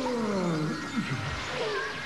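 Animated cartoon soundtrack: a long pitched sound gliding down over about the first second, followed by shorter falling swoops.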